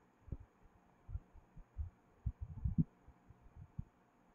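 Faint, irregular low thumps, about ten in four seconds, over a faint steady hum.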